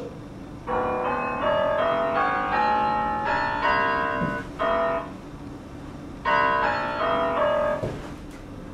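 Piano-voiced notes from the Microsoft GS Wavetable Software Synth, triggered by MIDI as a foot crosses a camera-watched line: quick runs of single notes stepping up and down in pitch, about four notes a second. The notes come in three bursts, a long one about a second in, a short one around the middle, and another near the end.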